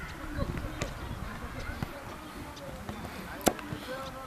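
Faint voices talking in the background, with scattered small knocks and one sharp knock near the end.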